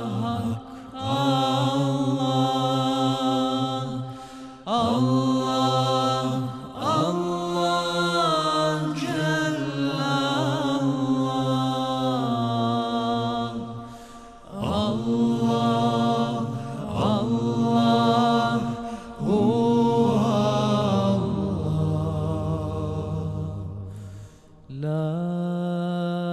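Male a cappella group singing a Bosnian ilahija: a lead voice sings long, ornamented melismatic phrases over the other voices' held low humming drone. The phrases are broken by short breaths, and near the end the low drone is held almost alone before a new phrase starts.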